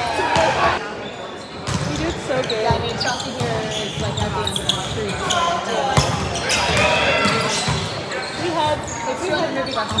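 Players' chatter and calls echoing in a large gym, with a few sharp thuds of a volleyball being hit or bounced, the loudest about six seconds in.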